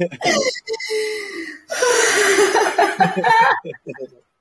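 A woman laughing heartily over a video call in a laughter yoga exercise. Short bursts of laughter at first break into one long, loud peal of laughter in the middle.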